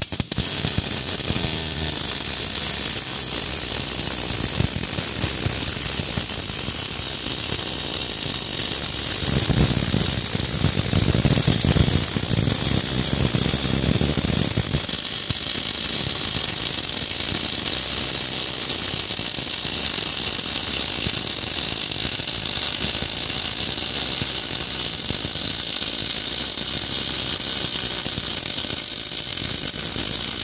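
MIG welding arc from a Kemppi Master M 358 welder, striking at the start and then running continuously as a dense crackle and buzz. Partway through the weld it runs fuller and deeper for about five seconds.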